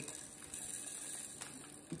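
Quiet, faint rustling of a small plastic bag of diamond painting drills being handled and opened.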